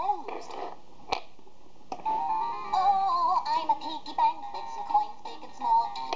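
Fisher-Price Laugh & Learn Piggy Bank toy's electronic voice and song through its small speaker: a brief voice sound, a couple of sharp plastic clicks, then from about two seconds in a synthesized sing-along tune.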